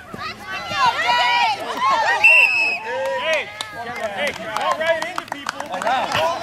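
Players and spectators shouting and calling out over each other during a flag football play. A referee's whistle blows once, for about half a second, a little over two seconds in, ending the play.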